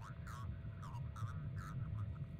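Sound design from the documentary's soundtrack: a low rumbling drone with a faint steady hum, and a few short wavering sounds over it.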